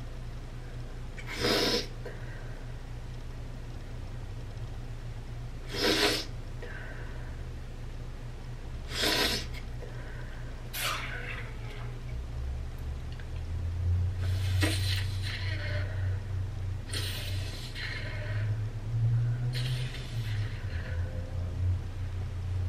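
Three sharp sniffs through the nose a few seconds apart while a nasal spray is being used, followed by several softer sniffs and breaths.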